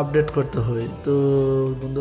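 A man's voice speaking in drawn-out, chant-like syllables, one held on a steady pitch for under a second midway.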